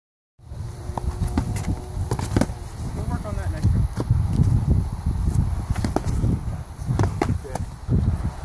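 Foam-padded sparring swords smacking against shields and bodies: an irregular run of sharp hits, over a low rumble.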